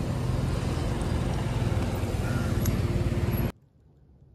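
A motor vehicle engine running steadily with a low hum, among street traffic noise. The sound cuts off abruptly about three and a half seconds in.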